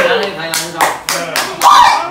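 Several sharp, uneven hand claps, with a person's voice trailing off at the start and calling out briefly near the end.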